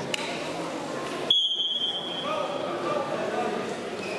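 A single high, steady signal tone a little over a second in, lasting under a second and fading out, marking the start of a wrestling bout. Hall chatter runs underneath.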